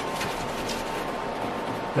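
Sanding block rubbed by hand back and forth over a cured epoxy resin surface, scuffing it so the next epoxy layer will bond: a steady scraping hiss.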